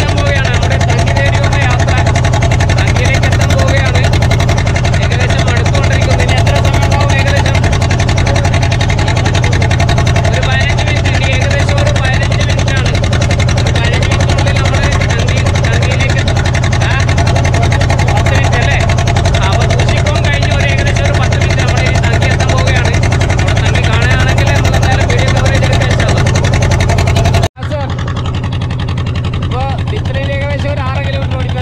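A motorboat engine runs steadily as a low drone, with people talking over it. The sound cuts out for an instant near the end, then carries on a little quieter.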